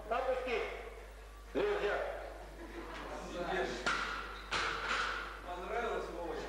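Men's voices talking and calling out in an echoing hall, with a sudden sharp knock about one and a half seconds in.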